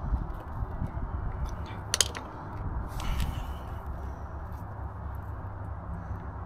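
Small handling noises of a flathead screwdriver being worked around a silicone-sprayed rubber spark plug boot to stretch it loose from the HT lead: a sharp click about two seconds in and a short rustle around three seconds, over a steady low rumble.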